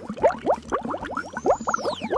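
Cartoon sound effect: a fast run of short rising bloops, about ten a second, with a whistle that rises and then falls over the second half.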